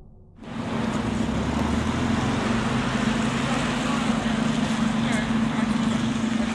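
A music tail fades out, then about half a second in the sound cuts abruptly to a military truck's engine running steadily, a constant low hum under outdoor noise, with faint voices in the background.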